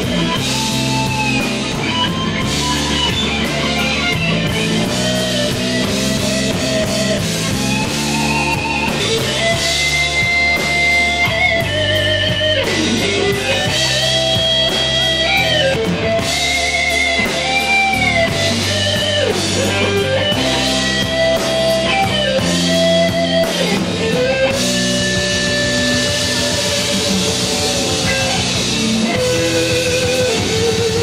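Live rock band playing an instrumental: an electric guitar lead with held, bending notes over bass guitar and drum kit.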